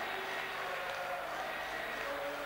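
Football stadium crowd making a steady noise of cheering after a home goal.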